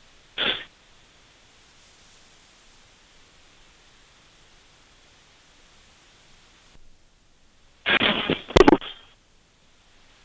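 Short shouts or grunts heard over the referee's radio microphone, one brief burst about half a second in and a louder double burst near the end, with faint hiss in between.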